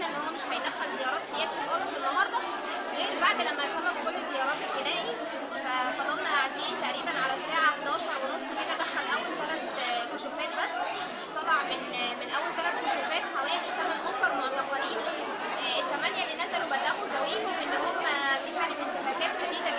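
Crowd chatter: many people talking over one another at once, a steady jumble of voices.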